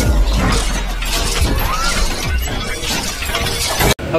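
Intro music with a heavy bass under crashing, shattering-glass sound effects, cutting off suddenly just before the end.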